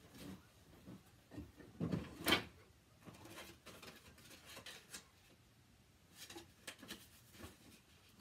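Scattered rustles and knocks of someone rummaging off camera for a paper card, the loudest a short clatter about two seconds in, with softer handling noises later.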